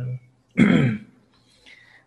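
A man clears his throat once, a short rasping burst about half a second in, during a pause in his talk.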